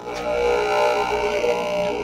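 Aquarium air pump sealed inside a plastic canister, running with a steady droning buzz that gets louder just after the start. It is drawing a vacuum in the canister, whose sides are starting to crush in.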